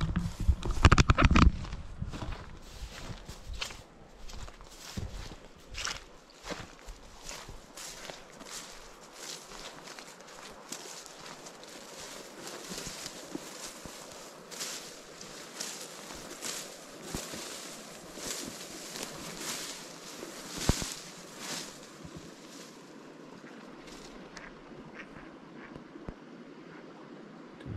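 Footsteps walking through long grass and brush, with vegetation rustling against clothing at each step. There is a loud burst of rumbling noise in the first second or so.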